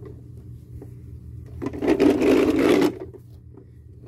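Plastic wheels of a toy car rattling as it is pushed over brick paving, one burst lasting about a second in the middle.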